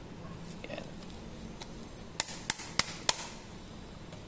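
Four quick, sharp taps about a third of a second apart: a hand patting a hook-and-loop sanding disc onto the backing pad of a Makita random orbital sander to make it grip.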